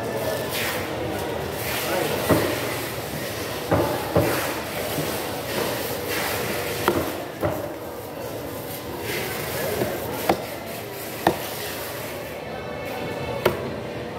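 Machete (golok) chopping through a tuna head into a wooden chopping block: about eight sharp, loud chops at irregular intervals over a steady background of voices and music.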